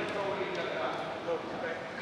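Speech only: a man's voice finishing a sentence, then faint scattered talk over low room noise in a large hall.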